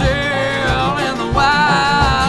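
Live bluegrass band music: banjo and bowed upright bass over a steady kick-drum beat of about three a second, with a bending lead melody on top.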